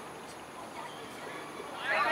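Faint, distant players' voices calling across a football pitch over steady outdoor background noise, with a loud shout from a player starting right at the end.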